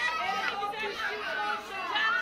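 Crowd chatter: several voices talking over one another at once, with no music playing.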